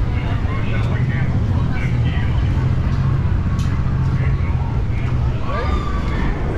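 Busy street ambience: a steady low engine hum from vehicles on the road, fading about five seconds in, with passersby talking under it.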